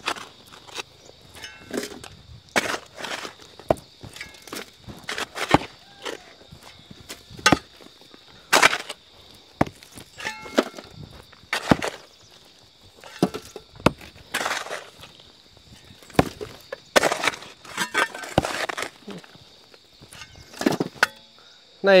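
Hand tools striking a rocky hillside: a mattock and an iron bar knocking into hard earth and stone at an irregular pace of about one blow a second, with short scrapes of loosened soil between the blows, as rock is broken out of the bank.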